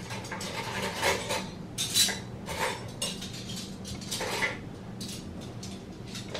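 Metal pots and kitchen utensils clinking and clattering as they are handled and moved, in irregular knocks, the loudest about one and two seconds in.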